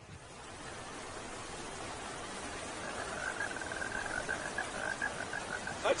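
Steady rain falling, an even hiss that grows slightly louder: rain from the water-vapour cloud left by a rocket engine test. From about halfway a frog calls in a rapid pulsed trill.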